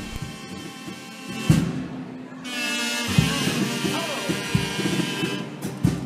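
Carnival chirigota's instrumental introduction. It opens quietly with a single drum beat, then about halfway a sustained chord comes in, held steady over scattered bass drum beats.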